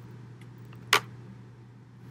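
A quiet pause with a steady low hum and one short, sharp click about halfway through.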